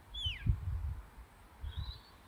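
A shepherd's whistle command to a working sheepdog: a short whistle falling in pitch early on, then a second brief high whistle near the end. Low gusts of wind buffet the microphone, loudest about half a second in.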